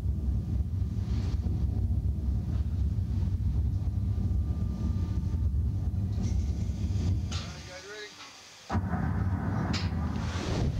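A steady low rumble while the slingshot ride's capsule is held, fading out for about a second near the end. Then a sudden loud rush of wind on the microphone as the capsule is launched upward.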